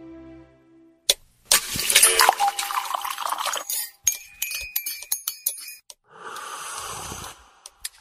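Soft background music ending, then, after about a second's pause, a string of sound effects: a noisy crash with ringing tones, a rapid run of sharp clinks and clicks, and a short rush of hiss.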